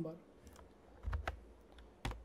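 A few scattered, faint clicks of computer keys, with a dull low thump a little past a second in.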